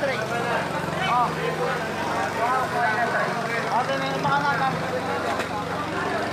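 Several people talking over one another in a busy work area, over a steady low hum.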